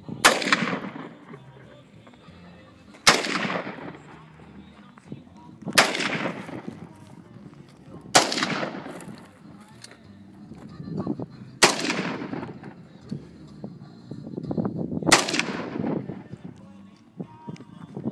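AK-pattern rifle fired six single shots, spaced a few seconds apart, each shot trailing off in echo.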